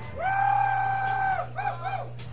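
A person whooping: one long, high held "woooo" of about a second, then two short whoops near the end, over a steady low electrical hum from the stage amplification.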